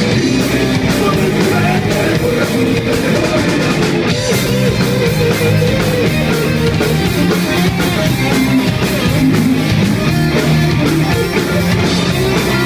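A live heavy metal band playing loud and without a break: electric guitar, bass and a drum kit. About four seconds in, the cymbals briefly drop out.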